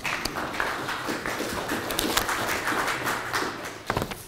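Audience applauding: dense, steady clapping that dies away just before the next speaker begins.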